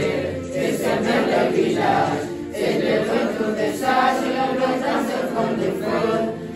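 A choir of many voices singing together.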